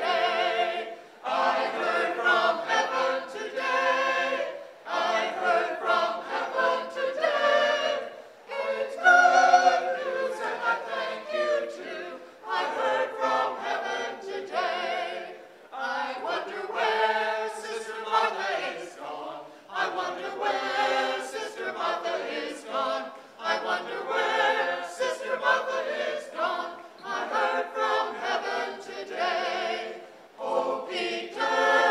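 Small mixed choir of men and women singing together, in phrases with brief breaks between them.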